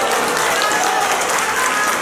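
Audience applauding steadily, with some voices in the crowd mixed in.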